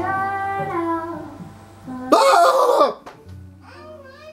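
Background music, broken about two seconds in by a man's loud, harsh coughing laugh lasting under a second.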